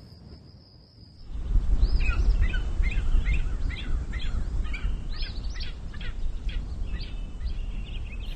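Birds calling in a string of short, arched chirps, two or three a second, starting about two seconds in, over a steady low rumble.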